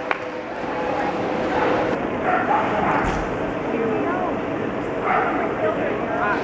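A few short dog barks and yips over a background murmur of people talking.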